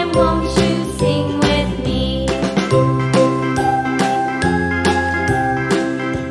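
Background music with a steady beat of about two strokes a second: a melody over changing bass notes, without singing.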